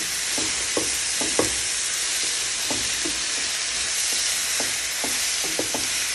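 Steak strips, asparagus and mushrooms sizzling steadily in a hot wok while being tossed with tongs, with a few light knocks and clicks as the food is turned.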